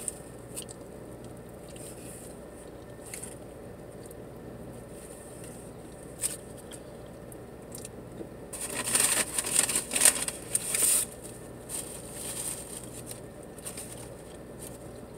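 Paper rustling and crinkling for about two and a half seconds past the middle as a napkin is pulled out of a paper bag, over a quiet car-cabin background with a few small clicks.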